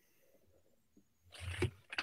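Near silence, then near the end a short breathy sound from a man's voice, leading into speech.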